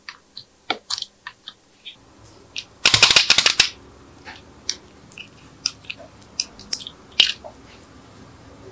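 Slime worked by fingers: scattered sticky clicks and pops, with a dense run of loud crackling about three seconds in, as a small plastic palette of coloured slime is handled and a piece is dug out of it.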